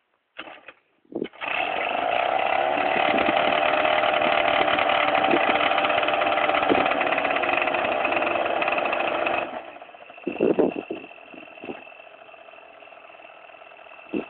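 Yamaha Aerox scooter engine revved up about a second in and held at high revs for about eight seconds while the scooter stands still, then dropping back to a much quieter idle.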